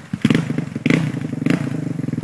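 Dirt bike engine catching about a quarter second in and then running steadily at idle, with a couple of short mechanical clacks.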